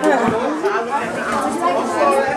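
Several people talking over one another in a crowded room: overlapping party chatter of adults and children with no single clear voice.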